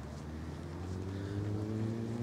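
A motor vehicle's engine running, its pitch climbing slowly and steadily from about half a second in as it speeds up.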